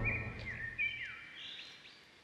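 Faint bird-like chirps, short calls gliding up and down in pitch, fading out. A low hum dies away about a second in.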